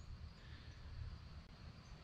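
Faint outdoor background: a low, even hiss and rumble with a faint, steady, high-pitched chirring of insects such as crickets.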